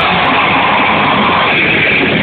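Metalcore band playing loud: distorted guitars and drums in a dense, unbroken wall of sound, with the treble cut off.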